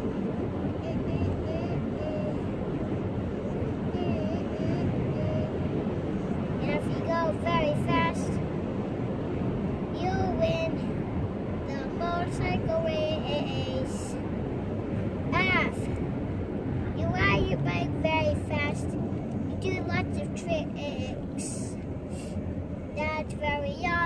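A young child singing a made-up song in short phrases with pauses, over a steady low rumble.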